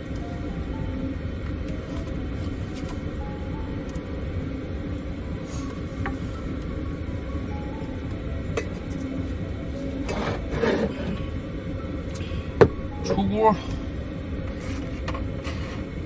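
A pot of dumplings at a rolling boil on a small stove, a steady low rumble, under soft background music. A single sharp clink of the ladle against the pot comes about three-quarters of the way through, and a brief word follows.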